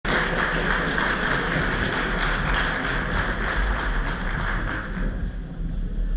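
Audience applauding, a dense patter of many hands clapping that dies down about five seconds in.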